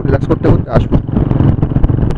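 Motorcycle engine running steadily at highway cruising speed, with a man talking loudly over it.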